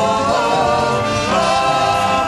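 Gospel worship song sung in Twi: a woman sings lead into a microphone with a choir, in long held notes that slide between pitches over a steady low accompaniment.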